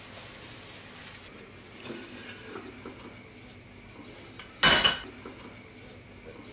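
A frying pan and plate handled on a gas hob while a tortilla de patatas is turned out onto the plate: a few faint knocks and scrapes, then one sharp metallic clank of the pan on the hob about four and a half seconds in.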